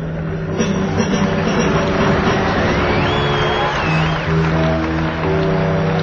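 Live electric rock band playing loud: sustained electric guitar and bass notes over a dense, noisy wash. About halfway through, a thin high whine rises, wavers, and falls away.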